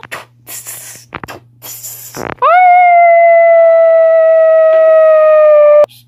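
A loud, wolf-like howl: one long held note, lasting about three and a half seconds, that swoops up at the start, sags slightly and cuts off sharply. Before it come a few brief rustling noises.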